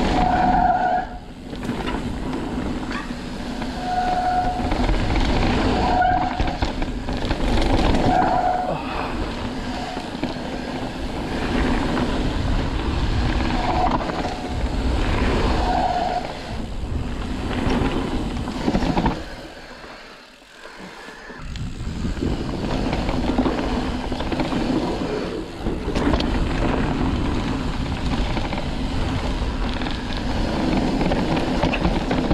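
Ibis Ripmo AF mountain bike rolling fast down dirt singletrack: continuous tyre noise on the dirt, rattle from the bike and wind on the microphone. It is broken by several brief squeals in the first half and by a short lull about 20 seconds in.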